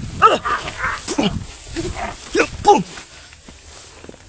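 A dog barking in short yelps that drop sharply in pitch, about five of them in the first three seconds, then quieter.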